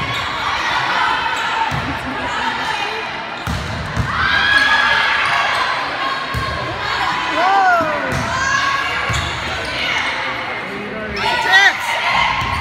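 A volleyball rally on a hardwood gym court: the ball is hit with dull thuds several times, sneakers squeak briefly on the floor, and players and spectators shout over a steady crowd murmur, all echoing in the large hall.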